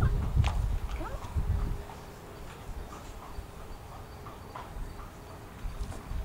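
Horse shifting its weight and legs on grass while being coaxed into a bow: low rumbling and a few soft knocks over the first two seconds, then quieter with faint scattered clicks.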